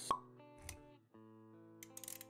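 Intro-animation sound design: a short pop about a tenth of a second in, over soft sustained music tones, with a low thud after it and a brief drop-out near the middle before the tones resume.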